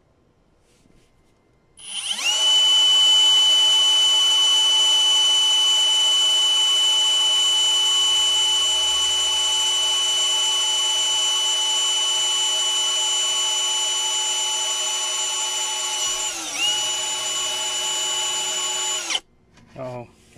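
Cordless drill boring a hole through a plastic trim panel: the motor starts about two seconds in and runs with a steady high whine. It dips briefly in pitch under load near the end, recovers, then stops suddenly.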